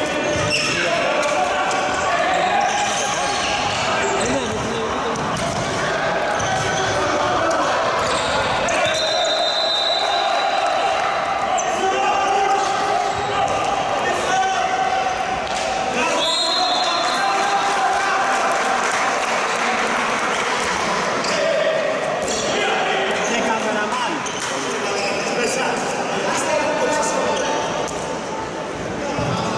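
Handball game in a large echoing sports hall: the ball bouncing on the court and voices calling out. Two short, high whistle blasts come about 9 and 16 seconds in.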